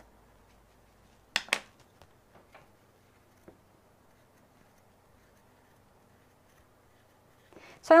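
Near-silent room tone broken by a sharp double click about a second and a half in and a few faint ticks after it: a hand carving tool being handled and scraped on a leather-hard clay plate during sgraffito carving.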